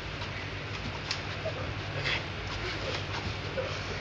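Outdoor background ambience: a steady hiss with a low hum, broken by a few faint clicks or knocks and small faint calls.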